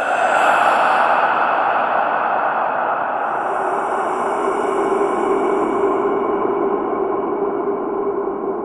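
Eerie horror-style sound effect: a loud, steady, dense rushing drone with faint held tones underneath, and a thin high hiss layered on through the middle.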